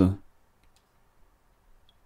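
A voice trails off at the start, then near silence with a few faint, tiny clicks.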